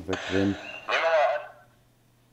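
Unwanted audio playing from the computer's media player: a harsh, hissy sound with a high wavering tone about a second in, dying away as the playback volume is turned down, leaving a faint low hum.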